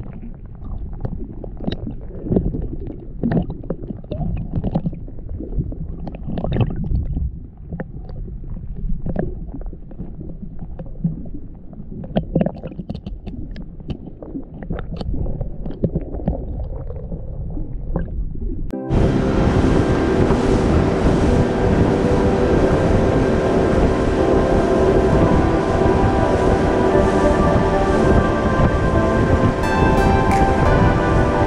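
Muffled underwater water sound heard through a submerged camera, with irregular clicks and knocks. About two-thirds of the way in it cuts off suddenly and music starts, louder.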